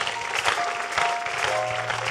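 Congregation clapping and cheering in praise, over a band holding sustained chords whose notes shift every half second or so.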